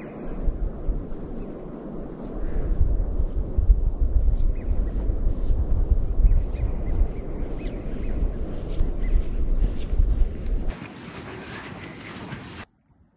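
Wind buffeting the microphone in gusts, a heavy low rumble that rises and falls. Near the end it cuts to a quieter steady hiss.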